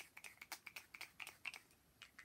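A quick run of faint, light clicks, about five or six a second, thinning out about a second and a half in.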